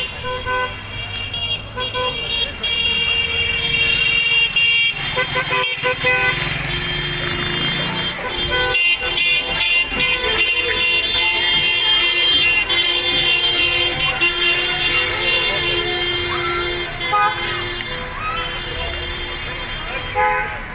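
Many car horns honking at once, long overlapping held tones, over the running of a slow line of cars and people's voices shouting.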